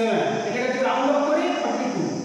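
A man speaking, explaining in a lecturing manner.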